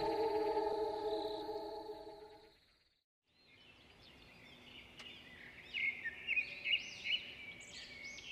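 A steady held tone fades out over the first two seconds. After a second of silence, birds chirp faintly and repeatedly.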